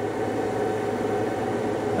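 Steady whir and electrical hum of a power inverter and space heater running under a heavy load of about 50 amps.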